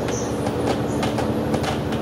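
Cabin noise inside a moving double-decker bus: a steady engine and road drone with constant clattering and rattling of the interior fittings.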